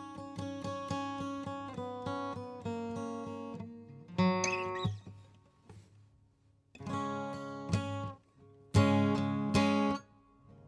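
Acoustic guitar: single notes picked in a steady repeating pattern over ringing strings, then a louder strummed chord about four seconds in. After a brief near-quiet pause, loud chords are strummed a few times near the end.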